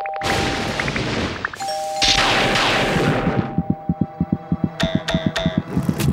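Cartoon sound effects: a held two-note chime like a doorbell, struck again about a second and a half in over a noisy whoosh, then a fast run of thumps, about six a second, through the second half.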